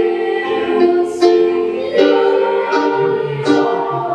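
A small youth choir singing together with electronic keyboard accompaniment, moving through a string of held notes.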